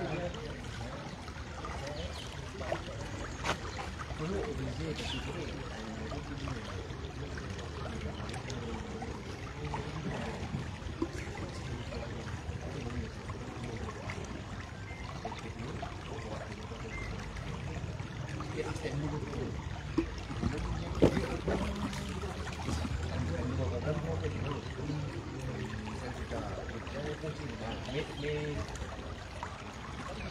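Outdoor ambience: indistinct voices of people talking nearby over a steady rushing background noise, with a few sharp knocks about 3 s in and around 20 s in.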